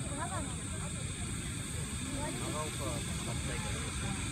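Indistinct voices of a crowd talking over a steady low rumble. No firework bursts are heard.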